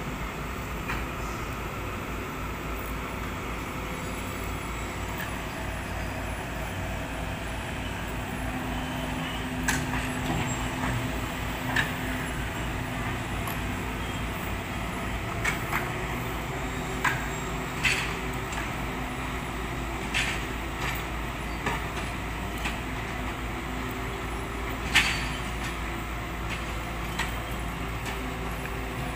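Diesel engines of long-reach amphibious excavators running steadily while dredging river mud, with a scatter of sharp knocks every second or few, the loudest about 25 seconds in.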